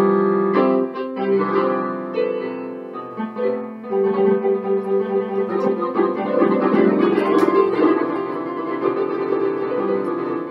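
Electric piano played solo: held notes and chords for the first few seconds, then a fast run of rapidly repeated notes from about four seconds in.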